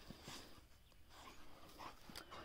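Near silence outdoors, with only a few faint, short scuffs.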